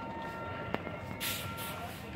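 Supermarket background noise: a steady hum with faint held tones, a single sharp click a little under a second in, and a brief high hiss a bit past the middle.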